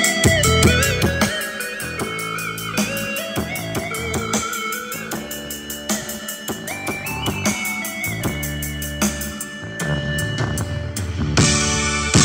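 Music with guitar and drums played through a bare 4-inch neodymium mid-bass speaker driver, without cabinet or tweeter; the midrange comes through very clear.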